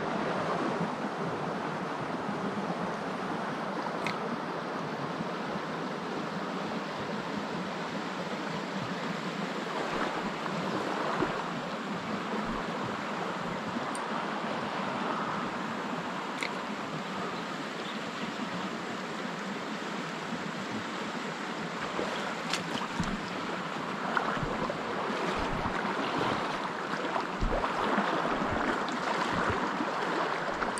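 Steady rush of a shallow creek running over a riffle, with a few faint clicks.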